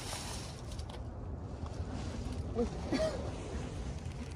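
Low steady outdoor background rumble with a couple of faint, brief voice sounds a little before the three-second mark.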